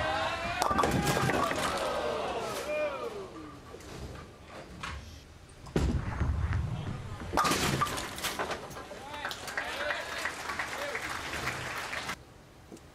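A bowling ball crashes into the pins right at the start, leaving a 4-6-7-10 split, and a crowd reacts with voices sliding down in pitch. About six seconds in, a second ball rumbles down the lane and clatters into the remaining pins, and there is more crowd reaction.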